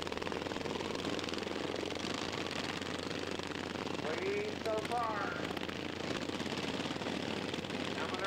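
Several racing lawn mower engines running at speed, a fast, even stream of engine firing pulses; these GP class engines are governed to 3,650 rpm. A faint voice comes through about halfway in.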